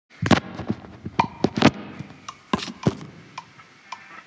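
A series of about ten irregular sharp knocks and clicks, some leaving a brief ringing tone. They come thickest and loudest in the first two seconds, then thin out to fainter ticks.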